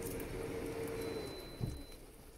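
JVC JK-MB047 air grill's fan humming steadily, then fading out about a second and a half in as the grill stops with its lid opened. A soft thump near the end.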